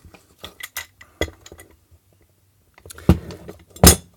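A small bench vice being worked on a hard plastic air-pump case clamped in its jaws: scattered light clicks and ticks, a pause, then two sharp knocks near the end as the pump comes out of the vice. The glued case is not cracking under the squeeze.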